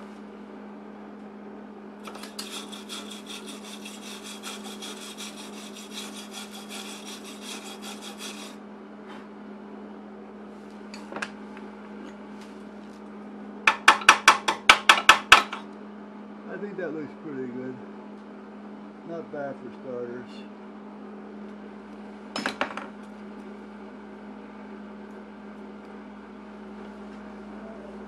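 Workshop work on a metal lift beam, over a steady low hum: from about two seconds in, a fast, even, high-pitched rattle for about six seconds. About halfway through comes the loudest sound, a quick run of about eight sharp knocks on metal, and a single knock follows some seconds later.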